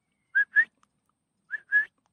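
Two pairs of short, clear whistled notes, each note rising slightly, the first pair about a third of a second in and the second near the end.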